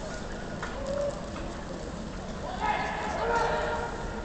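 A voice calls out for about a second near the end over the hush of a large indoor arena crowd, with a few faint knocks before it.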